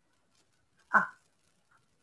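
A person's single short 'ah' about a second in, with near silence on either side.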